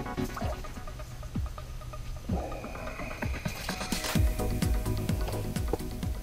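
Background music with held low notes and a steady low beat.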